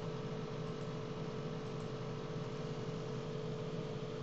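Steady background hiss and hum with a faint steady tone, typical of a computer recording setup's room tone; nothing starts or stops.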